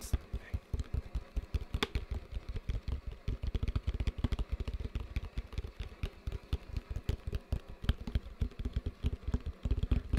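Fingers tapping rapidly on a hollow plastic toy bucket held close to the microphone: a quick, uneven patter of dull taps, several a second, that goes on without a break.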